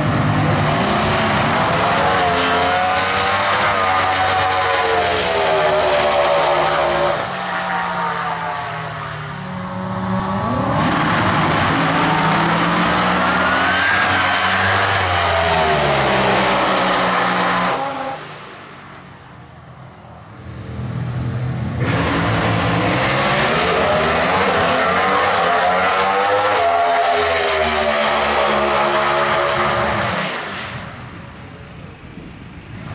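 Drag-racing cars making full-throttle passes, the engine note climbing steeply through the revs and then falling away, in three loud runs. There are two short breaks between the runs, the second one much quieter.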